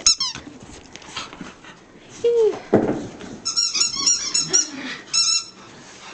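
A corgi and a Shiba Inu tussling over a toy: a short falling whine, a rough growl-like burst, then a run of high-pitched squeaks about halfway through.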